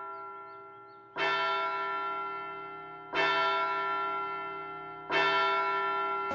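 A clock-tower bell tolling, with strikes about two seconds apart that each ring out and fade. A strike from just before is still fading at the start, and three more follow.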